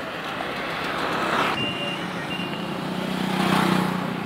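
Road traffic noise heard from a moving vehicle, with engine noise that swells twice. There are two short high beeps near the middle, and a low engine hum grows toward the end as an auto-rickshaw draws alongside.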